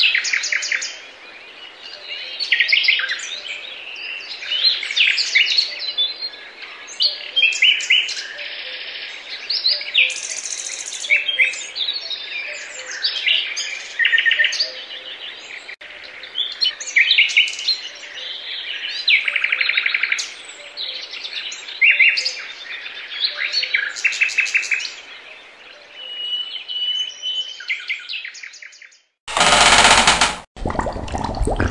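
Dense birdsong: several birds chirping and trilling in overlapping short phrases. About a second before the end, a loud rushing noise cuts in suddenly and drowns it out.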